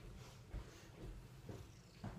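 Domestic tabby cat purring, a faint, steady low rumble.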